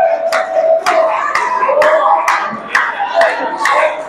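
Steady rhythmic hand clapping, about two claps a second, over held voices.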